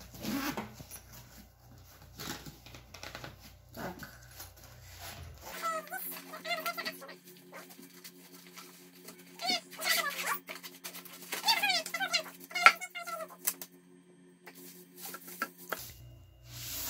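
Zipper and fabric handling as a padded ukulele gig bag is unzipped. About five seconds in this gives way to an added sound bed: a steady low drone with repeated short calls that bend downward in pitch, the loudest of them near the end.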